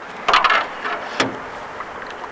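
A short splashy rush about a quarter second in, then a single sharp knock just past a second, as a long-handled landing net is dipped into the water beside a small aluminium boat to land a hooked redear sunfish.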